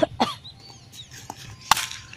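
Faint clucking of chickens, broken by a few sharp knocks, the loudest about three-quarters of the way through.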